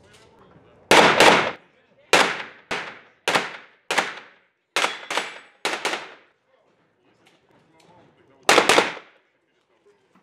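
A string of about a dozen gunshots, mostly fired as quick pairs (double taps on targets), with a pause of about two seconds before a final pair near the end. Each shot rings on in the echo of an indoor range.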